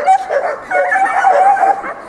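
A dog barking and yipping over and over in quick succession, in short, high-pitched calls.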